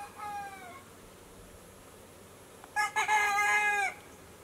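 A rooster crowing twice: the end of one crow fades out in the first second, then a louder crow of about a second comes near the end, dropping in pitch as it finishes.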